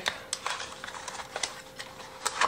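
Small cardboard product box being opened by hand, its inner tray sliding out: a few short clicks and light scrapes of the packaging.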